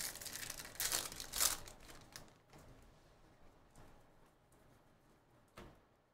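Plastic wrapper of a Bowman Draft jumbo baseball card pack being torn open by hand and crinkled, loudest about a second in and dying away after two seconds. A short rustle of handling comes near the end.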